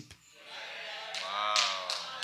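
A brief silence, then a voice holding one drawn-out vowel that rises and falls gently in pitch, over faint room noise and much softer than the preaching around it.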